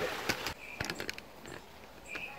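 Handling noise from a camera being set up: a few sharp clicks and knocks in the first second, with a brief high squeak about half a second in, then faint low background.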